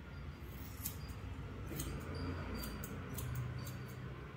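Hair-cutting scissors snipping through hair in an irregular run of about eight short, crisp snips, over a low steady hum.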